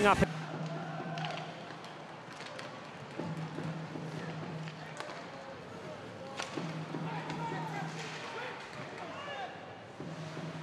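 Ice hockey arena sound during play: crowd murmur and voices, with a few sharp knocks of sticks and puck over a low hum that comes and goes.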